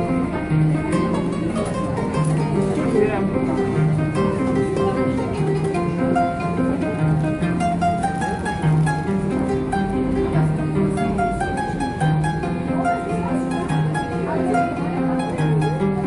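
A kora played solo: plucked melody notes over a steadily repeating bass figure.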